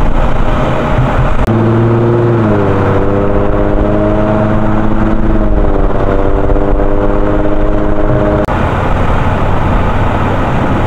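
Loud, steady engine noise, with a pitched motor hum that comes in about a second and a half in, drops in pitch a second later, holds level, and stops abruptly near the end.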